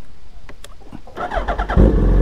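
Suzuki Hayabusa sport bike being started: a few clicks, then the starter cranks with a rising whir for about half a second, and the inline-four catches with a sudden loud surge near the end.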